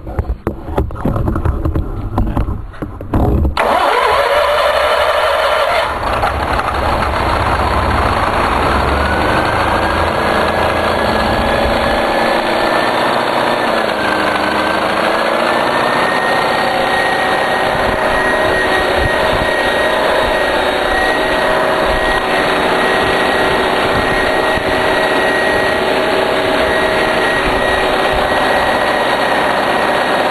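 Generator-set engine on charcoal gas from a gasifier, cranked in short uneven bursts until it catches about three and a half seconds in, then running steadily. Its speed rises and wavers a little before settling.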